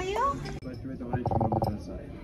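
Voices in a restaurant dining room: speech breaks off abruptly about half a second in, then a short pitched vocal sound from a person follows over quiet background chatter.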